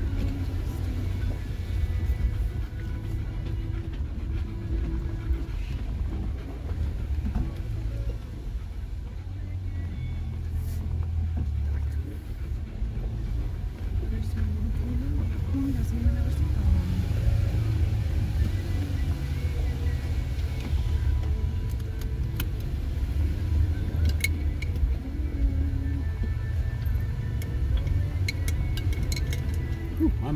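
Low, steady rumble inside a Jeep Gladiator's cabin as it crawls slowly down a rough, rocky trail: engine and tyres on loose rock, with a few short clicks and rattles along the way.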